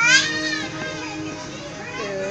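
A toddler's short, high-pitched squeal at the very start, rising and then falling in pitch, with a fainter vocal sound near the end.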